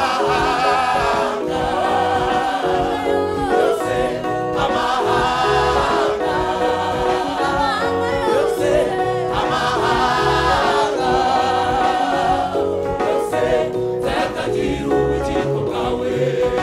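Church choir singing a gospel song in full voice, accompanied by a band with keyboard and electric guitars over a steady bass line.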